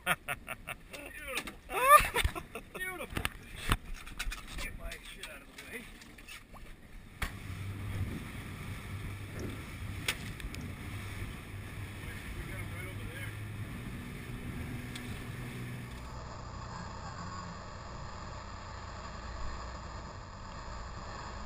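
Splashing and sharp knocks as a striped bass is netted and brought aboard, mixed with short gliding squeaks. From about seven seconds a steady low hum of the Yamaha 225 outboard sets in, with wind and water rushing as the boat runs near the end.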